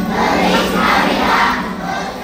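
A large group of young children shouting and cheering together in a loud, swelling mass of voices, with the last sung notes of a carol still trailing underneath at the start.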